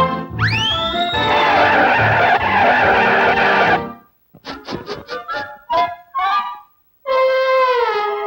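Cartoon soundtrack music and effects. A whistle glides upward over a loud rushing noise that cuts off about four seconds in. A run of short, separate notes follows, then a brief gap, then a brass line slides downward in steps near the end.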